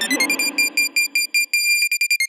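Electronic music intro of a cumbia remix: a rapid stuttering synth beep, about eight pulses a second, glides up in pitch and then holds a high note. The echo of a vocal sample fades out during the first second.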